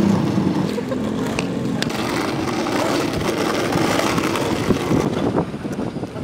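Skateboard wheels rolling over rough asphalt: a steady rolling noise with a few light clicks.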